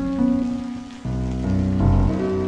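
Live-coded electronic music from TidalCycles: layered sustained pitched tones over a grainy, noisy texture of chopped and sliced samples. The harmony shifts about a second in as a deeper bass layer enters, with a strong low hit near the end.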